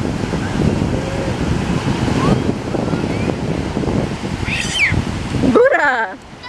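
Surf washing onto the shore under steady wind buffeting the microphone, with children's voices faint in the background and a child's squeal near the end.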